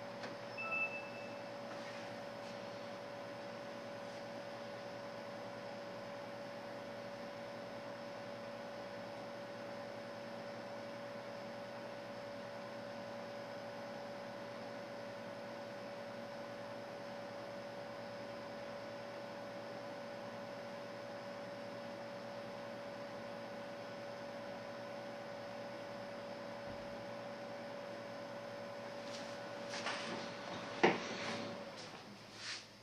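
Steady hum of a running desktop computer, one held tone over a faint even hiss, while Windows Vista shuts down. A few faint clicks come near the end.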